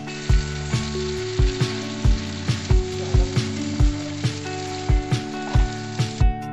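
Chowmein noodles sizzling in a hot pan as they are stir-fried and tossed with sauce. A steady hiss starts abruptly and runs under background music with a regular beat.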